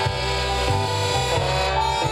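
Live band playing an instrumental jazz passage: horns holding sustained notes over an electric guitar and a low bass line that changes note every half second or so.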